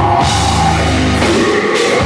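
Metal band playing live at full volume: electric guitars and drum kit with cymbals.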